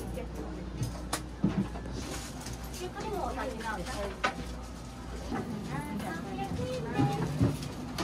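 Indistinct voices of people talking, over a steady low hum that drops away a little past the middle, with a few sharp clicks.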